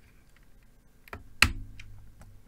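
A few keystrokes on a GammaKay LK67 hotswap mechanical keyboard fitted with Feker Panda switches: short sharp clacks, the loudest about a second and a half in.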